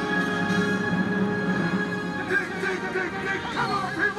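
Film soundtrack music with long sustained notes, played over an outdoor movie screen's speakers; from about halfway, wavering voice-like sounds come in over the music.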